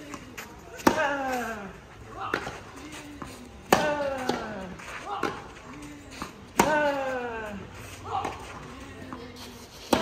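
Tennis rally: a racket strikes the ball about every one and a half seconds. Loud hits from the near player alternate with fainter ones from the opponent across the net, and each hit is followed by a short grunt that falls in pitch.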